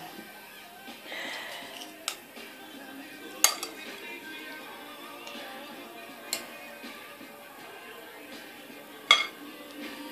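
A spoon clinking against a glass mixing bowl four times, spaced a couple of seconds apart, as diced boiled potatoes are scooped out, over faint background music.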